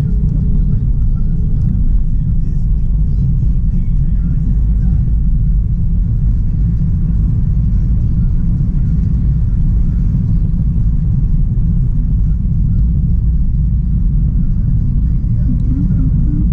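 Steady low rumble of a car driving, heard inside the cabin: road and engine noise at an even level.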